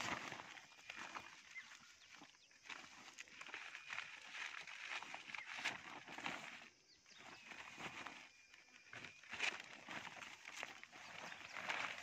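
Woven sack rustling faintly as it is lifted and handled, with a few faint, thin high calls from the wild boar piglets inside.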